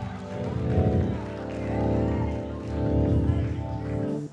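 Church band music: sustained chords held over a pulsing bass, swelling and easing in loudness.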